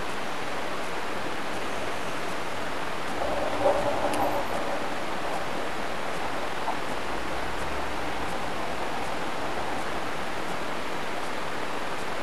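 Steady hiss from the recording microphone, with a brief soft voice sound, a murmur or a small laugh, about three to four and a half seconds in.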